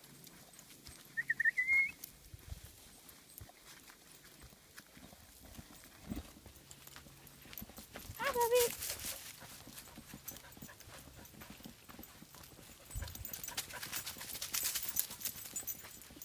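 Footsteps and dogs' paws shuffling through dry fallen leaves on a woodland trail, a dense crackle loudest in the last few seconds. Two short high calls, one about a second and a half in, the other at about eight and a half seconds.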